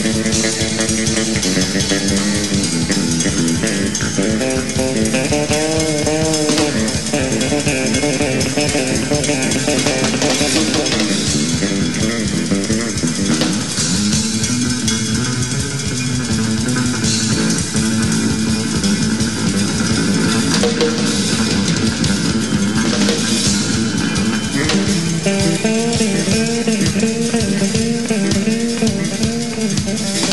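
Live band playing an instrumental passage, led by electric bass lines over a drum kit's steady beat.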